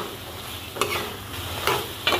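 Metal spoon stirring potatoes, peas and tomato masala in a metal pan, scraping the pan's bottom twice about a second apart, over a steady sizzle of the frying masala.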